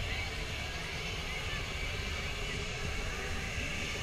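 Steady fairground din heard from on a Miami ride: a continuous mix of ride machinery, distant music and voices with no single sound standing out.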